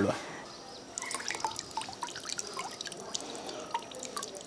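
Bitter orange juice dripping from a squeezed fruit half into a steel bowl of water: faint, irregular small drips starting about a second in.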